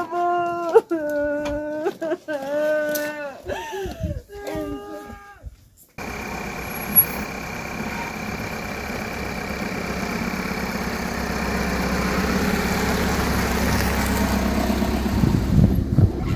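For the first five seconds or so, a woman wails in a high, drawn-out, sing-song crying voice. It then gives way abruptly to a Volkswagen Transporter van driving on a dirt track, its engine and tyre noise growing steadily louder as it approaches, with one short bump about seven seconds in.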